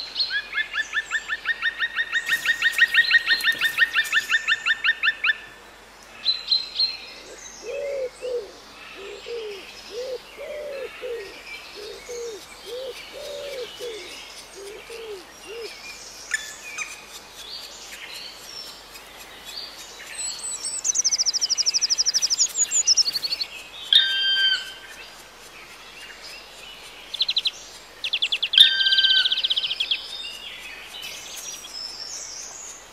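Birds singing one after another. A fast trill of evenly repeated notes runs for about five seconds, then a slow run of low repeated notes, then a high rapid trill and a few short chirps near the end.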